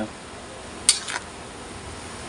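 A utensil clinking and scraping against a metal pan while stir-frying noodles, with one sharp clink just under a second in and a lighter one just after, over a steady hiss.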